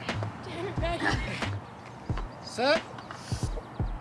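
Brief snatches of indistinct speech with a few separate knocks of footsteps on a rubber running track.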